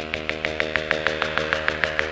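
Electro synth-pop music: fast, even ticking percussion at about eight hits a second over sustained synth chords, slowly getting louder.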